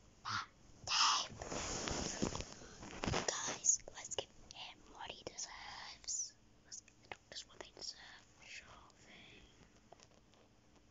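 A person whispering in short breathy phrases, loudest in the first few seconds, then in scattered fragments.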